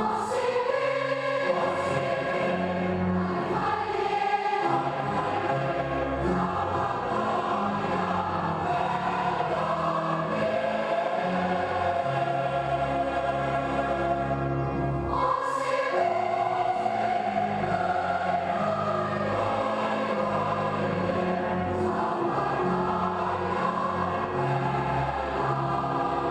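A choir singing long, sustained chords in slow phrases, with a new phrase entering about fifteen seconds in.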